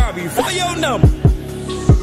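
Hip hop track: a rapped vocal over deep kick drum hits that slide down in pitch, four hits in the two seconds.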